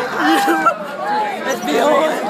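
Several people chattering, their voices overlapping.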